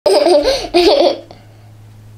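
A young child laughing in two bursts during the first second or so, then stopping.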